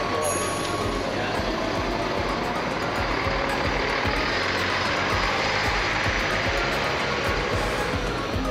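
Large tour coach's diesel engine running as the bus pulls away and drives past, its noise swelling in the middle and easing near the end.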